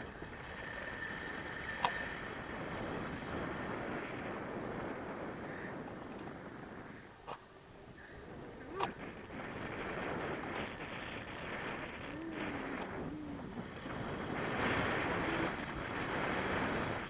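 Wind rushing over the camera microphone of a paraglider in flight, gusting unevenly, with a few sharp knocks and growing louder near the end as the glider banks.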